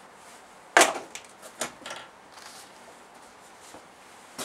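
Dry-erase markers being swapped: one sharp click about a second in, then a few lighter clicks and taps as the old marker is set down and a fresh one uncapped.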